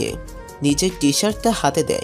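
A voice speaking Bengali, voice-acted story dialogue, over soft background music with steady held tones.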